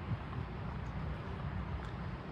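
Steady low outdoor rumble with a faint even hiss; no distinct event stands out.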